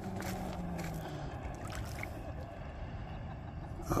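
Steady low rumble of riverside outdoor noise, wind and moving water on the microphone, with a faint low hum that fades out about a second in.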